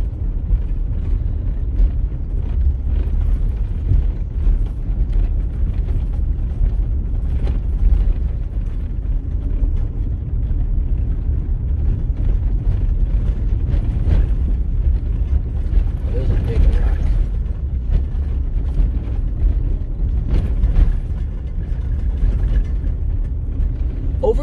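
Road noise heard inside a vehicle driving slowly over a rough gravel road: a steady low rumble of tyres on gravel and rock, broken by frequent small knocks and rattles as it goes over bumps and potholes.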